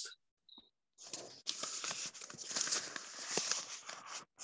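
Rustling, crackling noise picked up by a participant's microphone on a video call, starting about a second in, with small clicks in it.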